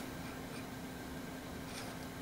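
Quiet room tone with a faint, steady low hum and no distinct events.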